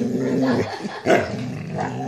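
Belgian Malinois vocalizing in a long, wavering, growly grumble-whine, with a sharper, louder yelp about a second in: an impatient dog demanding attention to be taken for a walk.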